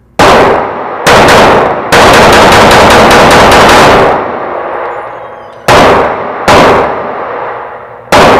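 Canik TP9SF 9mm pistol shots echoing in an indoor range. Two single shots come first, then a rapid string of about a dozen shots in about two seconds that ends as the slide locks back on an empty magazine. Two more loud shots come near the end.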